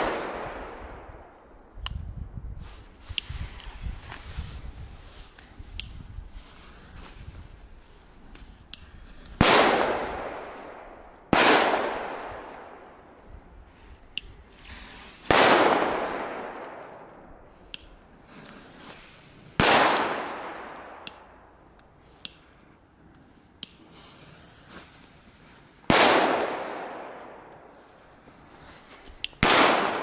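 Firecrackers going off one at a time on the ground: six loud bangs a few seconds apart, the first about nine seconds in and the last near the end, each ringing out in a long fading echo, with a few faint pops between them.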